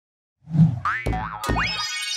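BBC iPlayer logo ident: starting about half a second in, a low thump and a run of springy boing sound effects with rising pitch glides and two sharp hits, leading into a high ringing chime near the end.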